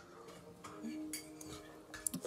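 A quiet sip of tea from a ceramic mug, with a few faint knocks and clinks as the mug is handled.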